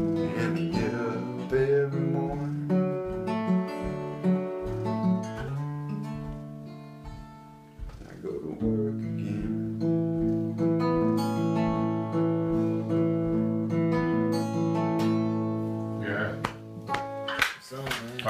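Acoustic guitar playing the closing bars of a song without singing: sustained strummed chords that die away about halfway through, then a second passage that rings on until it stops shortly before the end, when voices come in.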